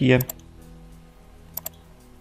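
Computer mouse clicking: a quick double-click right after the last spoken word, and another double-click about a second and a half in.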